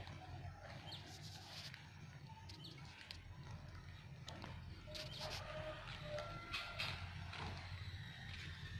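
Quiet outdoor ambience: footsteps on dry dirt ground as a person walks, over a low steady background noise, with a few faint short chirp-like calls.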